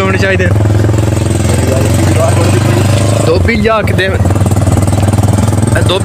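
An engine running steadily at an even pitch close by, with a man's voice breaking in briefly about three and a half seconds in.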